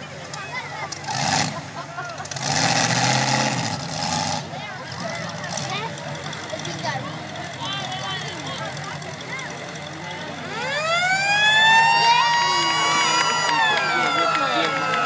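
Demolition derby cars' engines running under crowd noise, with a louder stretch about two to four seconds in. About ten seconds in, a siren winds up, rising in pitch and then holding a steady wail: the signal to stop the heat, as a red flag comes out.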